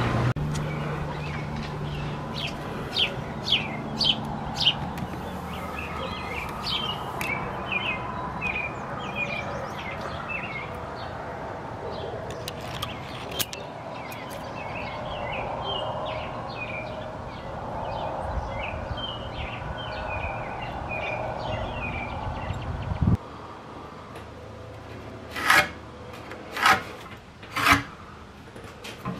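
Birds chirping in repeated short notes over a steady low hum that cuts off suddenly. Near the end come three short, loud scraping knocks from wood being handled on a workbench.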